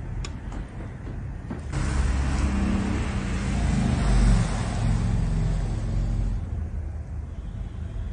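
A loud rushing noise with a heavy low rumble that starts suddenly about two seconds in, swells, and fades out about six seconds in, after a couple of faint clicks.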